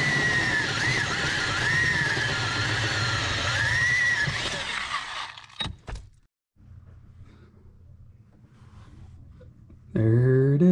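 Electric drill running a 1-3/8 inch (35 mm) hole saw through the car's sheet-metal firewall, cutting the hole for a clutch master cylinder. It makes a steady grinding whine that wavers in pitch and stops abruptly about five and a half seconds in, leaving only a faint low hum.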